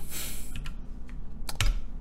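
Computer keyboard being typed on: a few separate, irregular key presses, after a brief hiss at the start.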